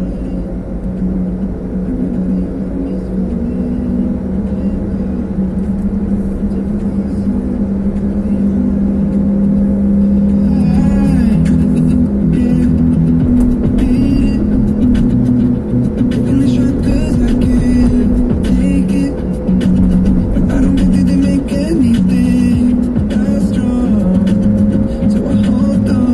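Music playing in a moving car over the steady drone of the engine and tyres at highway speed, heard from inside the cabin. The music's beat comes through more clearly from about ten seconds in.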